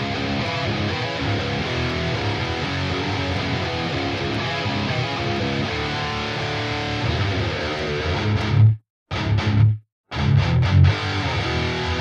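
Recorded electric guitar track playing back through a blend of cabinet impulse responses in the Cab Lab 4 IR loader plugin, the third IR just added. The playback cuts out twice, briefly, about nine seconds in, then resumes.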